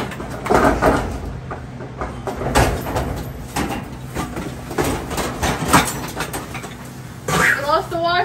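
Clatter and knocking of a wire folding shopping cart and boxes being pulled out of a packed storage unit, with plastic bags rustling: a run of short, sharp knocks and rattles.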